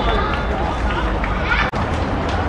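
Indistinct voices of footballers calling and talking across an outdoor pitch over a steady low rumble, with a sudden brief break in the sound near the end.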